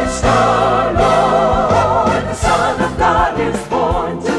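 Choir singing a Christmas song with vibrato over steady instrumental accompaniment.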